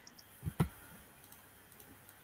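Two quick computer mouse clicks close together about half a second in, then faint room tone.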